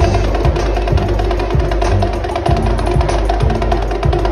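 Snare drum played with sticks in rapid strokes, over recorded backing music with a moving bass line.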